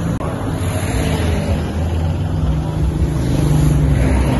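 Road traffic: car engines running in slow traffic close by, with wind buffeting the microphone. A low engine hum strengthens and rises slightly in pitch near the end. A brief dropout comes just after the start.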